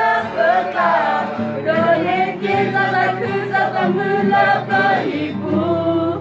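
A mixed group of young men and women singing a Karen hymn together in chorus, without a break.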